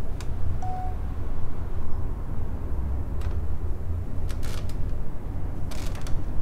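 A steady low rumble with a few sharp clicks scattered through it and a brief faint tone about half a second in.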